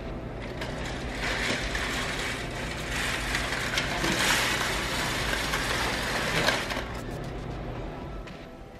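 Vertical window blinds being drawn open: the slats clatter and the carriers rattle along the headrail. The sound builds after about a second, is loudest in the middle and fades near the end.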